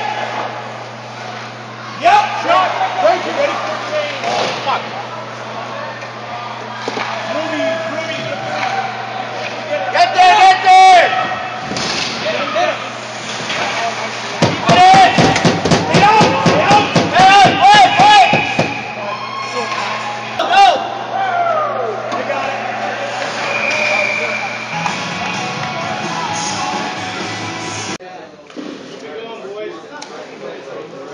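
Hockey game noise: scattered shouts from players and the bench over a steady hum. About halfway there is a loud burst of sharp knocks and shouting lasting several seconds.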